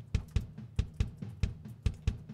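Superior Drummer 2 sampled acoustic drum kit playing a quantized MIDI tom groove with kick drum: an even run of about four to five strikes a second. The toms and kick land perfectly together on the grid, so each beat sounds like a single hit rather than a human, slightly flammed one.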